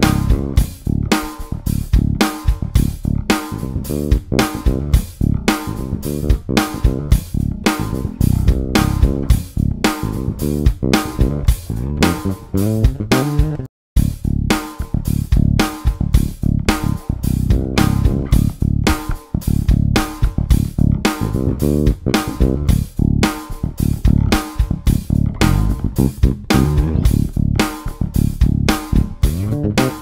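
Handmade Wyn Basses five-string electric bass played in a steady rhythmic line over a drum beat. The rear pickup is in humbucker mode at first; after a short break near the middle, it is switched to single-coil mode.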